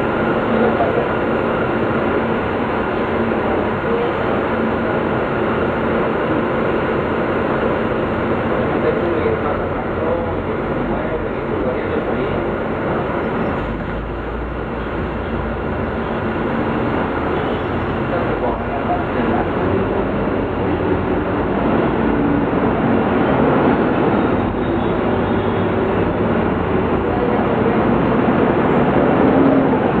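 Interior ride noise of a Volvo B9 SALF articulated city bus under way, with its diesel engine running and road rumble, heard from inside the passenger cabin. The noise eases a little about halfway through and builds again toward the end.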